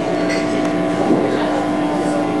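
A steady drone of several held tones over a hiss, the opening of a short film's soundtrack played through the venue's speakers.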